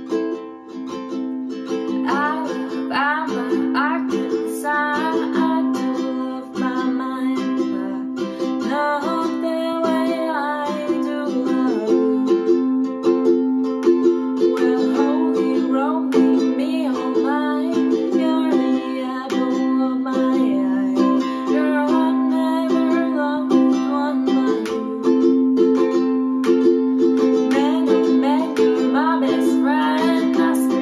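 Ukulele strummed in steady chords, with a young woman's voice singing over it from about two seconds in.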